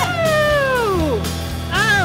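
A person's long, high, falling yell that slides down over about a second, then a shorter rising and falling cry near the end, over background music.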